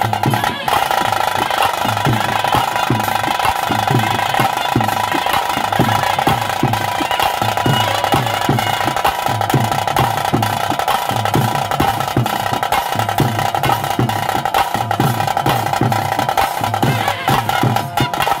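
Traditional bhoota kola ritual music: drums beating a steady rhythm under a held high note that runs without a break.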